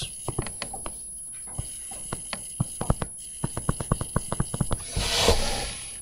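A run of light clicks and taps, quickening to about eight a second midway, then a short hiss near the end.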